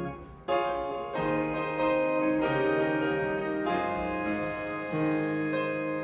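Piano prelude played in slow, sustained chords, a new chord sounding every second or so, with a brief break just after the start.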